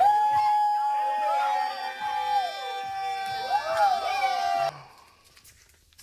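One long, steady high note like a howl, held for nearly five seconds with other voices sounding over it, then cutting off suddenly.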